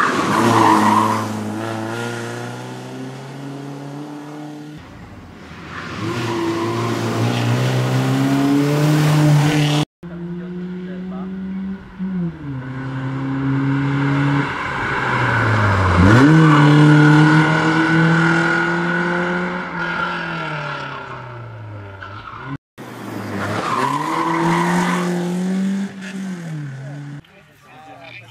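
A BMW E46 rally car's engine, revved hard and run up through the gears, its pitch climbing and dropping sharply with each gear change and lift. The sound comes in three stretches with abrupt cuts about ten and twenty-three seconds in.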